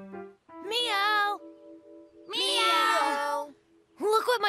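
Sustained background music, over which a cartoon cat character's voice gives two drawn-out, wavering meow-like calls of about a second each, the second starting a little past the middle.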